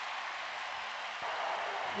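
Stadium crowd noise: a steady wash of many voices, a little louder in the second half.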